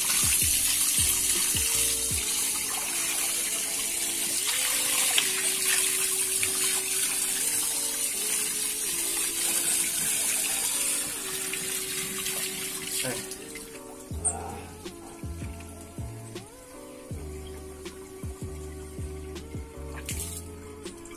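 Water running from an outdoor wall tap into a plastic cup and a concrete sink, a steady splashing rush that falls away after about thirteen seconds. Background music with slow, stepping tones plays underneath.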